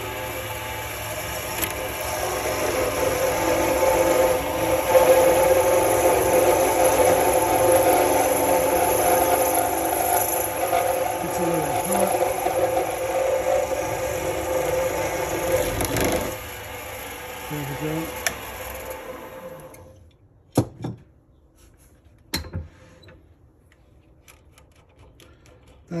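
Mini lathe running at low speed while a box-cutter blade is held against a brass pen tube spinning on the mandrel, cutting through it. About three-quarters of the way in the motor is switched off and winds down, followed by two sharp clicks.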